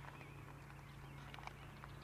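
Near silence: a faint steady low hum with a few soft ticks about one and a half seconds in.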